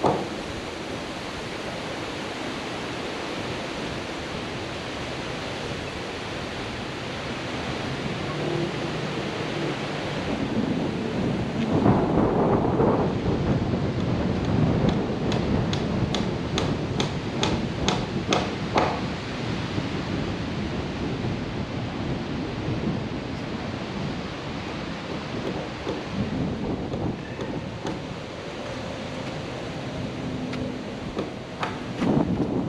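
Wind buffeting the microphone, swelling in gusts through the middle. Around the middle comes a rapid run of about a dozen hammer blows, roughly four a second, as board siding is nailed up.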